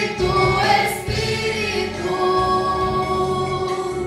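A woman singing a gospel worship song into a microphone, her voice amplified, over steady low accompaniment. Her notes move in the first half, then she holds one long note through most of the second half.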